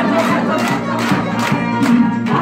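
A roomful of people clapping together in time with a played song, about two claps a second, while their voices call out in unison over the music.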